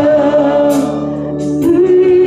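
Worship song sung by voices holding long, steady notes that change pitch every second or so.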